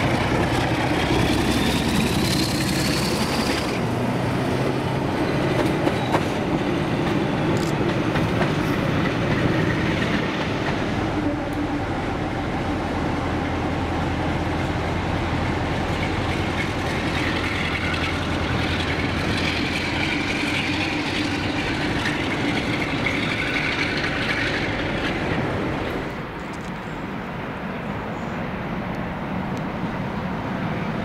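Two Class 47 diesel locomotives, each with a Sulzer 12LDA28 V12 engine, hauling coaches away under power. The leading engine works hard with a rising whine in the first few seconds, the coaches rumble and clatter over the rail joints, and the rear engine passes through the middle. Near the end the sound drops to quieter, more distant rail noise.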